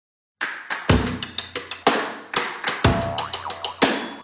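Music: a drum beat starting about half a second in, with a deep bass-drum hit about once a second and quicker, lighter hits between.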